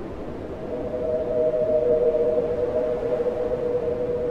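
Ambient electronic music: a sustained pad holding two close tones, which swells in about half a second in over a soft hiss.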